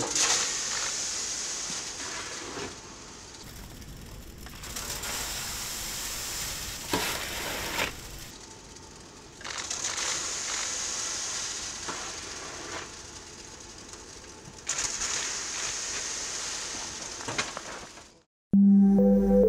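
Wet concrete rushing from a hose down a steel chute into a foundation pit. It comes in surges a few seconds long with quieter gaps between them.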